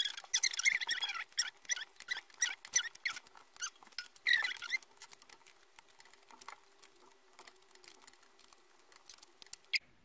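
Cards being dealt and laid onto a cloth-covered table: quick crisp taps and scrapes of card stock, dense in the first few seconds, with a longer sliding swish about four seconds in, then thinning to occasional taps.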